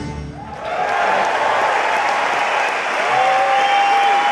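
Concert audience applauding and cheering, rising about half a second in as the band's last note dies away, with long, drawn-out shouts standing out above the clapping.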